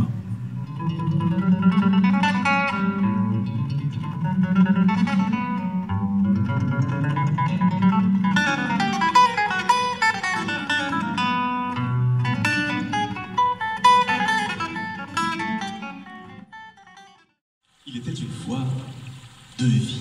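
A guitar played solo, picked notes and chords over a low bass line, dying away about three seconds before the end and followed by a moment of silence.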